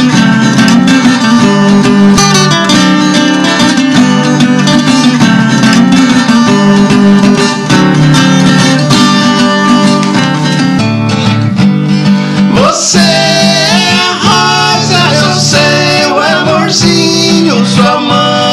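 Two acoustic guitars, a steel-string and a nylon-string classical guitar, strumming together in a sertanejo song. About two-thirds of the way through, voices come in singing over the guitars as a duet.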